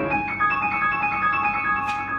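Two grand pianos playing together in a classical piece, with bright high-register notes ringing over little bass. A short tick sounds near the end.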